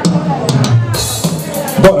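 A recorded backing track starting up, with a drum-kit beat and a loud drum hit near the end.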